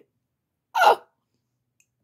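A man's single short vocal 'ooh', a brief ad-lib about a second in, with silence around it.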